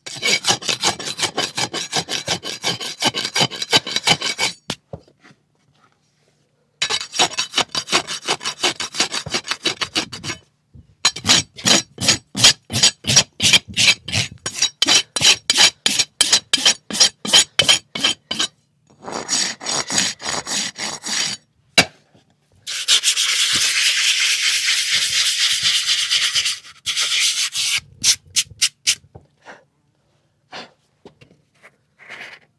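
A farrier's hoof rasp filing the outer wall of a shod horse's hoof in runs of quick back-and-forth strokes, with short pauses between them. This is the finishing dress of the wall after nailing on the shoe. Near the end comes one longer, smoother, unbroken pass.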